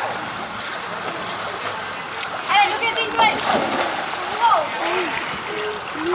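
Swimmers splashing in a pool, a steady wash of water noise, with children's high-pitched calls breaking in twice, about halfway through and again near the end.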